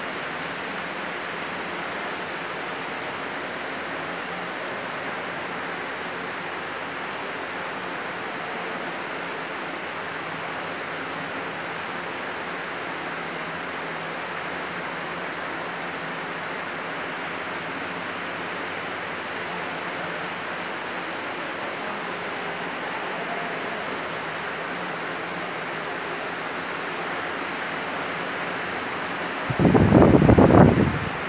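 Steady background hiss of a large indoor hall's fans and ventilation. A short, louder burst comes right at the end.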